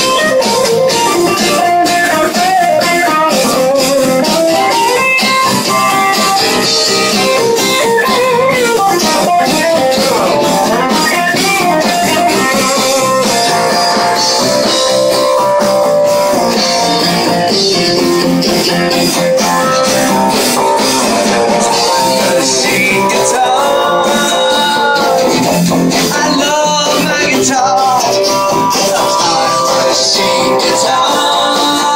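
Live band music led by guitars, an instrumental passage with strummed and plucked guitar parts.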